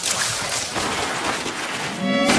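Leaves and branches rustling and crackling as a man pushes through dense overhanging bushes. The noise is steady and crackly.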